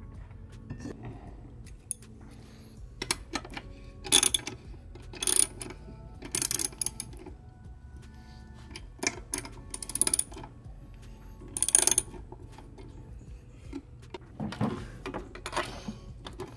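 Short bursts of metallic clinking and rattling, several seconds apart, from a lawn mower blade, its bolt, washer and socket being handled while the blade is fitted, over quiet background music.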